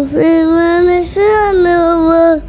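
A young boy singing into a handheld microphone, holding two long notes with a short break between them about a second in.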